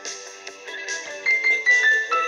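Keyboard playing a repeated melody: soft sustained chords, then about a second and a half in a bright four-note phrase stepping down in pitch, the same figure heard again and again.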